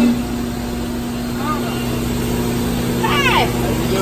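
Steady machine hum of a 400-ton Van Dorn hydraulic injection molding press running, a low electric drone with a few steady tones over it.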